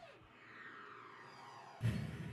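Quiet anime soundtrack sound effects: a falling whoosh at the start, then a sudden louder burst with a low rumble near the end.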